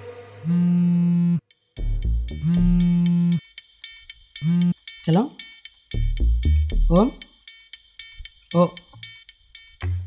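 Mobile phone ringing: three loud, flat electronic buzzing tones, the first two about a second each, the third short, until the call is answered.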